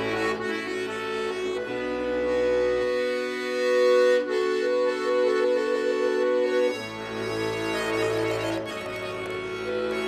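Bayan (Russian chromatic button accordion) playing an instrumental passage of held chords with a melody line on top, the chords changing every second or two. The low bass notes drop out for a few seconds in the middle and return near 7 seconds.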